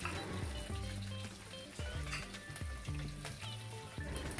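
Green chilies, mustard seeds and a dried red chili sizzling steadily in hot oil in a kadhai, with background music playing over it.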